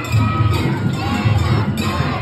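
A festival street crowd talking and shouting, with Japanese float festival music underneath: a regular low drum beat, some held melody notes and jingling metal percussion.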